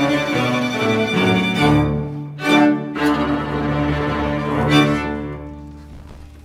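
Small string ensemble with violin, cello and double bass playing a passage together, with a brief break about two seconds in before the strings come back in on new chords. The sound then dies away toward the end.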